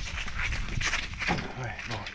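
Bare feet walking on gravel: a quick run of irregular crunching steps.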